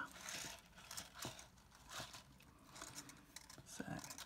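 Faint scratchy rustling and a few soft ticks of fine 0.4 mm jewellery wire being wound around the fingers off a reel.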